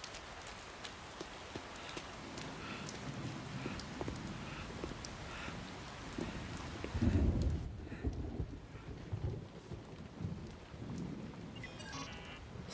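Steady rain falling, with a low roll of thunder about seven seconds in.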